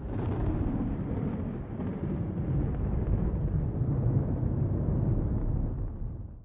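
A deep rumbling sound effect that starts suddenly and holds steady for about six seconds, then fades out, laid under the channel's end logo animation.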